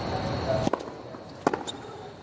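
Tennis racket strings hitting the ball twice on a hard court: a serve about two-thirds of a second in, then the return under a second later, each a sharp pop. A steady crowd murmur fades as the serve is struck.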